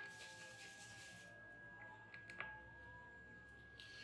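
Near silence: room tone with a faint steady high whine, a soft hiss in the first second and a couple of faint ticks about two and a half seconds in.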